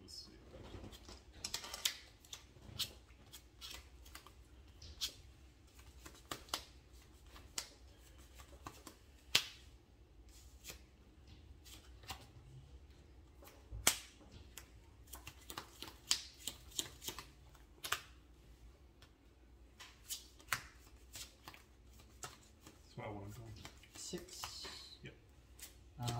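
Sleeved trading cards being handled and played onto a playmat: irregular sharp clicks and snaps, a few every couple of seconds, with a handful of louder ones.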